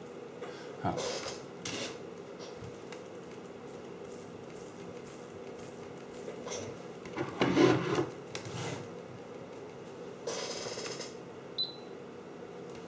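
Light handling noises of a small brushless motor and an oscilloscope probe being moved about on a bench mat: a few soft knocks and rustles, the loudest about halfway through. A steady low hum runs underneath.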